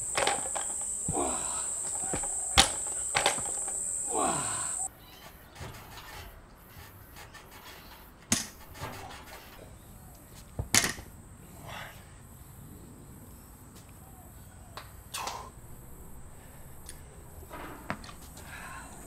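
Outdoor ambience of insects chirping on one steady high note, which cuts out about five seconds in and comes back fainter near halfway, with occasional sharp knocks and clanks of gym equipment.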